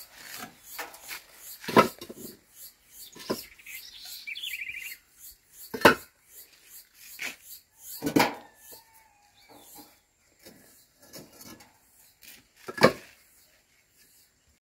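Hollow ceramic bricks knocking and scraping against one another as they are lifted from a wheelbarrow and stacked: a sharp clink every second or two, the loudest about two seconds in and near the end.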